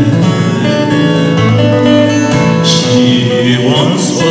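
Acoustic guitar being played, plucked notes and chords ringing over one another in a steady flow.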